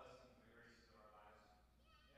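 Faint male voice speaking in a large gym, too distant and low for the words to carry.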